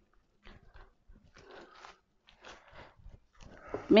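Faint, intermittent rustling of sawdust as hands mix mushroom spawn into it in a plastic basket, in a few short scattered bursts.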